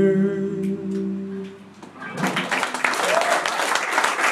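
A band ends a song on a long held chord, voices in harmony over electric guitar, which dies away about a second and a half in. About two seconds in, clapping starts and runs on.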